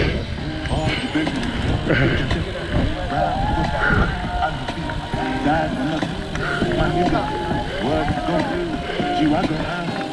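Indistinct chatter of riders in a group of road cyclists, with wind rushing over the microphone of a moving bicycle.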